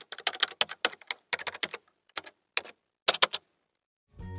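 Computer keyboard typing: keys clicking in quick, irregular runs of keystrokes, with a few louder clicks a little after three seconds in.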